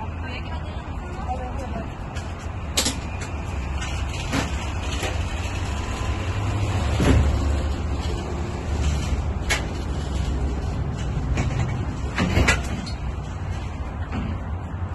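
Sharp knocks and clunks, about half a dozen spread out, the loudest about seven seconds in, as things are moved about in the open cargo area of a van, over a steady low rumble.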